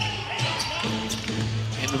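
A basketball being dribbled on a hardwood court, with arena ambience and a steady low hum underneath.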